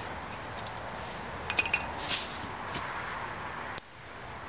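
Small tinder-bundle fire, just blown into flame from a bowdrill coal, burning with a few faint crackles over a steady background hiss. A short cluster of crackles comes about a second and a half in, and the background drops away abruptly near the end.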